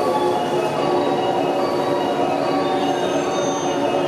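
Station departure melody playing from the platform speakers: a looping electronic tune of short steady notes, over the steady hum of a stopped train.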